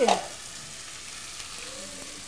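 Layers of tilapia, onion and tomato sizzling steadily in a pot on a gas burner.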